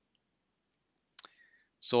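Silence for about a second, then a single short click followed by a faint breath, and a man starting to speak near the end.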